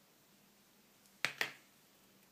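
Mandarin peel being pried loose from the fruit by hand, giving a short crisp tear of two quick clicks a little past a second in.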